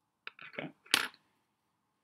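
A marker pen handled with one sharp, short click about a second in, as when it is capped or set down on the desk; a man says "okay" just before it.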